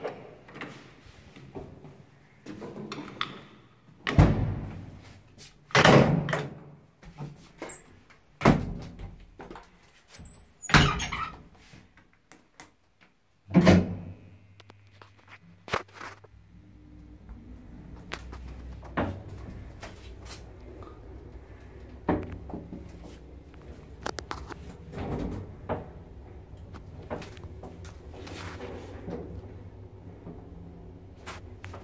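Elevator doors being shut with several loud thunks and two brief high squeaks. About halfway through, the 1972 ZUD elevator starts and runs with a steady low hum and scattered clicks and knocks as the car moves.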